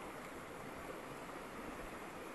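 Steady, even rushing of a river flowing past.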